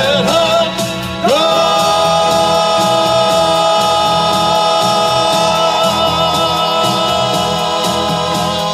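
Male vocal quartet singing in close harmony through microphones, the voices moving up together about a second in to a long held chord with a slight vibrato that begins to fade near the end.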